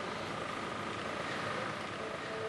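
Steady outdoor street noise: an even hiss from a distant vehicle, with a faint steady high hum.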